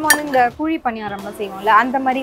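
Miniature metal cookware clinking as small pans are handled and lifted from a stacked shelf, with a sharp clink just after the start.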